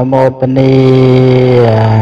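A man's voice chanting Buddhist verses in a steady, level monotone, one syllable held for over a second before the pitch sinks slightly near the end.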